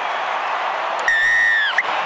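Stadium crowd cheering. About a second in comes a single long referee's whistle blast that dips in pitch as it ends, then a short pip.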